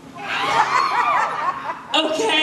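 Audience laughing, many voices at once, swelling just after the start and dying down near the end.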